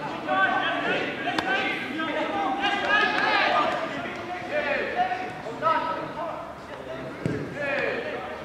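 Football players' shouts and calls across an outdoor pitch, with a few sharp thuds of the ball being kicked.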